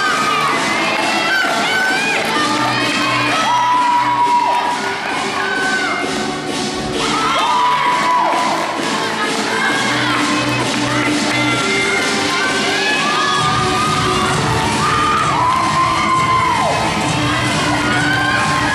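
Music for a gymnastics floor routine, with teammates and spectators cheering and shouting over it.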